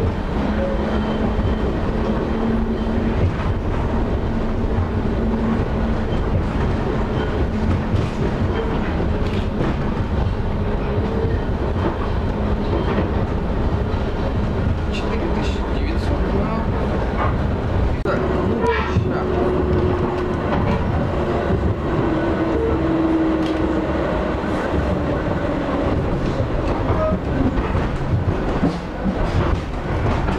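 Cabin running noise of a Pesa Fokstrot (71-414) tram travelling fast on uneven track: a steady rumble of wheels on rail with scattered clicks over the rail joints and a low hum that sits higher in pitch from about halfway through.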